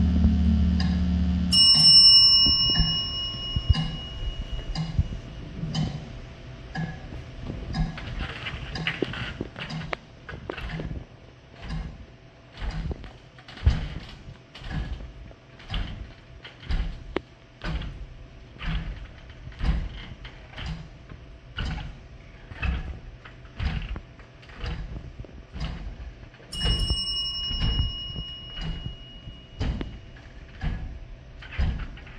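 A steady ticking of sharp clicks, about one and a half a second, with a bell-like chime ringing out for a couple of seconds twice: once about a second and a half in and again near the end. A low musical drone cuts off just before the first chime.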